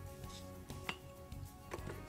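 Soft background music with a few light clicks and taps from a ruler and marking tool being handled on a plastic cutting board: one about a second in and two close together near the end.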